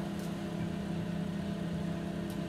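Steady low hum of a running motor, unchanging throughout.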